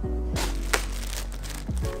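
Background music with steady low bass notes, over the rustle and crinkle of a plastic bag and clothing being handled, with one sharp crackle about three-quarters of a second in.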